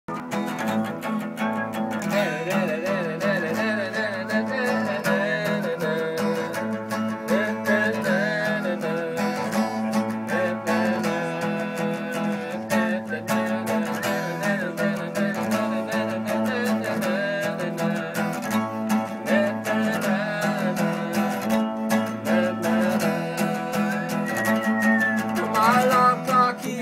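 Unplugged acoustic guitar strumming steadily through the song's intro, with a wordless voice carrying a wavering melody over it.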